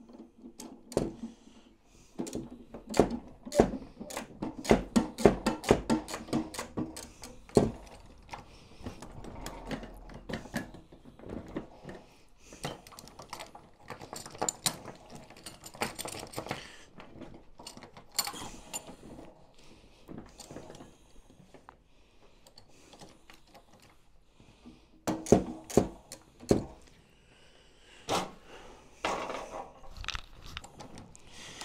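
Links of a 1/6 scale Armortek Tiger 1 model tank track clattering and clicking against each other and the wheels as the track is worked round by hand. It comes in three bouts of quick clicks: the longest early on, another in the middle and a last near the end.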